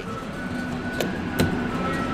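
Otis elevator hall call pushbutton pressed and released: two sharp clicks a little under half a second apart, over a steady low hum.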